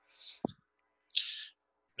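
A man's breathing between spoken phrases: two soft breaths, one at the start and one just past a second in, with a brief low mouth sound in between.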